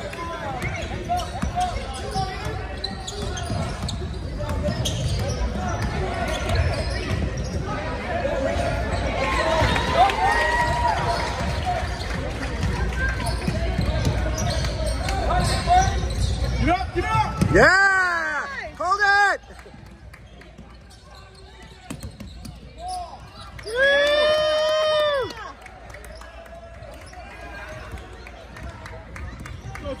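Basketball game on a hardwood gym floor: the ball bouncing, footfalls and a din of voices. A quick run of high squeaks about two-thirds of the way in, and one longer squeal a few seconds later, typical of sneakers skidding on the hardwood.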